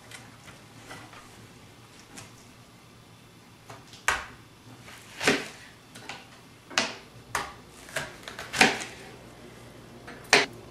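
A knife chopping an onion on a cutting board: about six separate, unevenly spaced chops in the second half.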